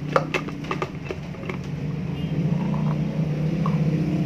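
Several clicks and knocks of a small glass blender jar with Oreo cookies inside being handled against a blender base, then a steady low hum that grows louder from about two seconds in.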